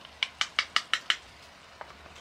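A wooden spatula tapped six times in quick succession on the rim of a cast-iron skillet, each tap a sharp click with a short ring, followed by a few fainter ticks near the end.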